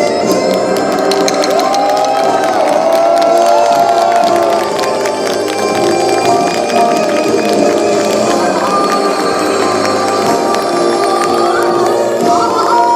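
Korean traditional folk music with sharp drum strikes, mixed with a crowd cheering and shouting.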